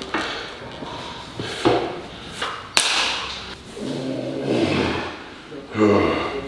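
Gym equipment knocks and thuds during deadlift preparation, with a sharp crack about three seconds in, and a voice or heavy breath late on.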